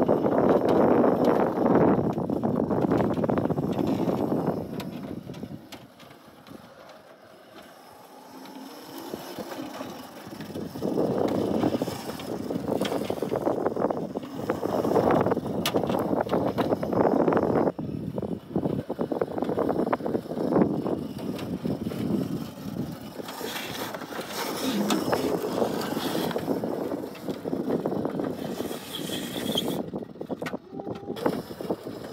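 Electric Crazy Cart drift kart being driven and drifted on concrete: wheels and casters rolling and scrubbing across the pavement, swelling and fading as the kart speeds up, slides and slows, with a quieter stretch for a few seconds early on.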